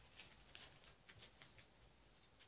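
Faint, short, crisp rustles and light ticks of a Pokémon card being handled and slid into a plastic trading card sleeve.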